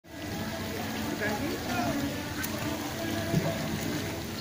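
Water splashing from a child's swimming strokes in a pool, with faint indistinct voices in the background and one louder thump near the end.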